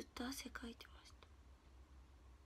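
A person speaking softly, almost in a whisper, for the first second or so. After that there is only a faint low hum of room tone.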